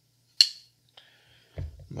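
TwoSun TS500 titanium frame-lock flipper knife closing: its D2 blade swings shut on ceramic bearings with one sharp metallic click and a brief ring. A faint low knock follows near the end as the knife is set down on the wooden tabletop.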